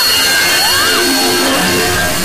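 Loud, dense mashup of several overlapping audio tracks, music and sound effects layered into a noisy jumble. Steady high tones run through it, with a short rising-then-falling glide a little over half a second in.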